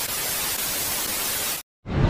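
Television static hiss used as a glitch transition effect: an even, steady hiss that cuts off suddenly near the end, leaving a brief silence.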